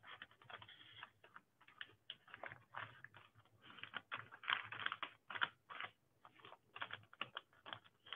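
Sheet of origami paper being folded and creased by hand: faint, irregular rustling and crinkling.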